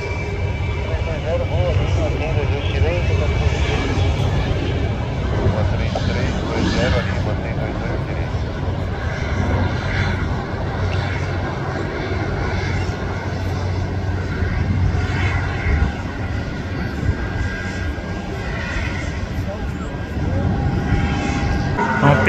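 Jet airliner engines giving a steady low rumble as an arriving airliner lands and rolls out on the runway.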